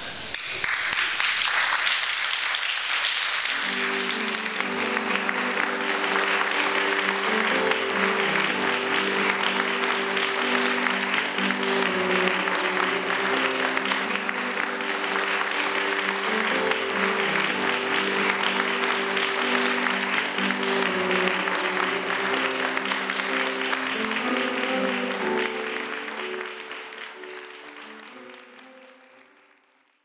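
An audience applauding steadily, with instrumental music coming in a few seconds in as sustained chords over it. Both fade out over the last few seconds.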